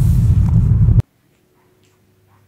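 Low rumble of a car's cabin on the move, loud and uneven, cut off abruptly about a second in. It gives way to a faint steady hum.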